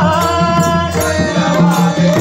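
Marathi abhang bhajan: a man's voice sings and holds a note over steady harmonium chords, with pakhawaj drum strokes underneath.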